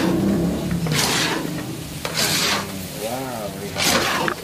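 A long wooden paddle scraping and stirring a thick, sticky coconut-and-sugar wajit mixture around a large metal wok, in about three strokes a little over a second apart.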